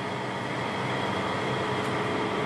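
Light rain falling, a steady even hiss with a faint constant hum under it.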